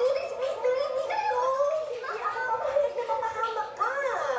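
Dialogue from a television drama, a high-pitched voice speaking without pause, with a rising and falling wail near the end.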